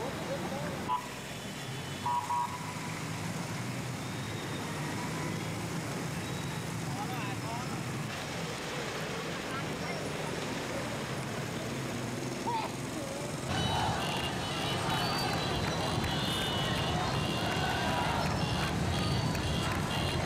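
Outdoor street ambience: indistinct crowd voices over motorbike and vehicle traffic, with two short beeps early on. About two-thirds of the way through it cuts to a louder, busier stretch of the same kind.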